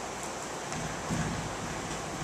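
Steady background hiss of room noise picked up by a camera microphone, with no distinct events.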